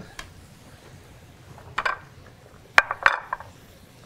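A few knocks and clinks of kitchen utensils and dishes being handled on a countertop: a short clatter a little under two seconds in, then a sharp knock and several quick clinks about three seconds in.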